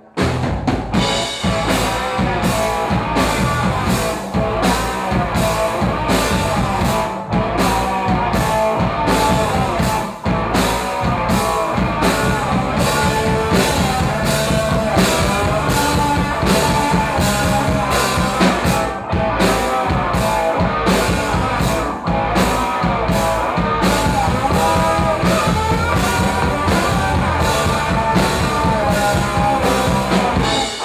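Live rock band playing loudly: drum kit, electric guitar and a woman singing. The whole band comes in at once right at the start.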